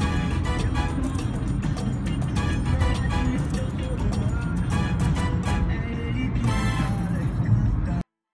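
Background music with a beat over the low rumble of a car driving on a highway; everything cuts off suddenly at the end.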